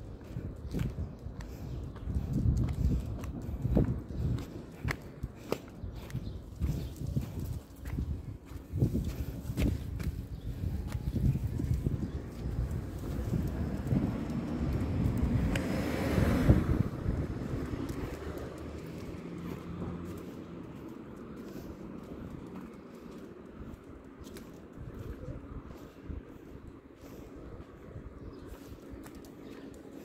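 Footsteps of a person walking on paving, an irregular run of soft low thuds through the first half. Around the middle a rush of noise swells and fades, and the rest is quieter with a faint steady low hum.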